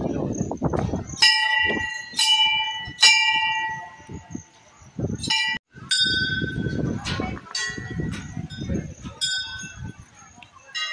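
Hindu temple bells struck by hand, ringing on after each strike: three strikes from one bell in the first few seconds, then further strikes later, some from a second bell of a different pitch. Crowd voices murmur underneath.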